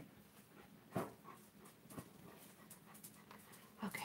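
Faint animal sounds, with a few soft clicks about one and two seconds in.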